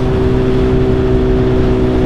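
Suzuki Hayabusa's inline-four engine running at a steady speed while the bike cruises, its note holding level without revving, over low wind and road rumble.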